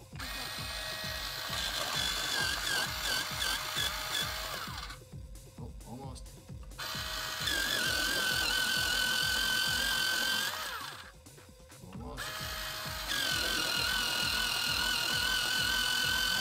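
Bostitch electric pencil sharpener's motor running as a wooden pencil is pushed in and ground, a steady whine that wavers slightly under the cutting load. It runs three times, about four seconds each, stopping briefly between runs as the pencil is taken out and pushed back in.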